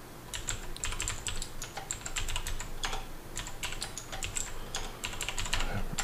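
Typing on a computer keyboard: a run of quick, irregular keystrokes that begins a moment in.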